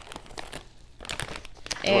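Plastic snack bag of popcorn crinkling as a hand rummages in it and pulls out a piece, in short rustles with a brief pause near the middle.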